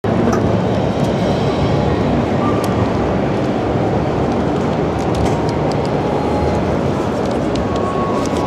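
Steady, loud din of a busy exhibition hall: a dense wash of room noise and distant voices, with a few faint clicks.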